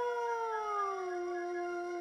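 Chamber ensemble music: a held note slides smoothly down in pitch about half a second in and settles lower, under a steady higher note.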